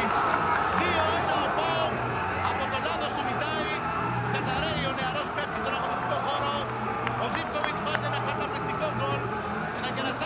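Footballers and bench staff shouting and cheering together, many excited voices overlapping, celebrating a late goal.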